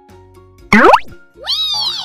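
Cartoon sound effects for a magic transformation: a quick, loud rising zip about three-quarters of a second in, then a pitched swooping tone that rises and then falls away.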